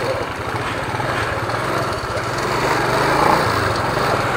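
Small motorcycle engine running steadily as the bike is ridden, with road and air noise around it.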